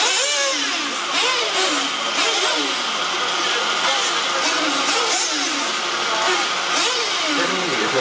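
Brushless electric RC off-road buggies racing on a dirt track: a dense whirring haze of motors and tyres, under a race commentator's voice.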